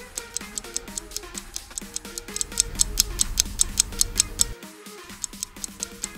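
Quiz countdown music: a looping tune with a fast, clock-like ticking of about five ticks a second, counting down the time left to answer. A low bass swells in the middle and drops out briefly near the end.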